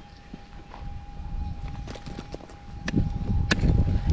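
Digging pick striking and scraping gravelly dirt, with sharp clicks of the blade on stones and heavier strikes near the end. A faint steady tone, the metal detector's audio through its speaker, runs underneath.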